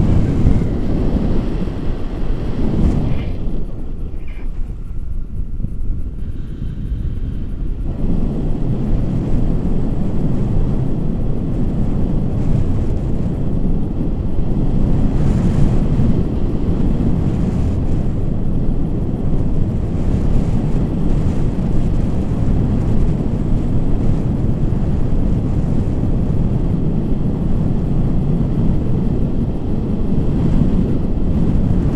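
Wind buffeting the microphone of a camera carried on a paraglider in flight: a loud, steady low rush that turns duller and a little quieter for a few seconds near the start.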